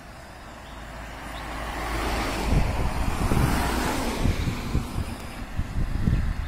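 Cars passing close by: tyre and engine noise swells to a peak about three seconds in, then fades as they drive away.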